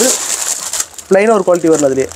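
Clear plastic bags of packed shirts crinkling as they are handled, between drawn-out, hesitant syllables of a man's voice.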